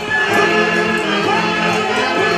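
Live tunantada dance music: a band plays a melody together with several pitched instruments, steady and loud.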